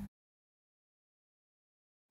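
Silence: the sound track drops out completely, with no room tone at all.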